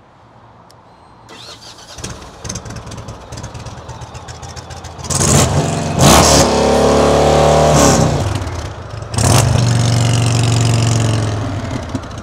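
Indian Dark Horse motorcycle's V-twin engine, on its stock mufflers, starting about a second in and idling. It is then revved twice in neutral, each rev rising, held for a couple of seconds and falling back.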